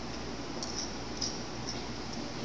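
Steady background hiss with three faint, light clicks of small objects being handled on a lab bench.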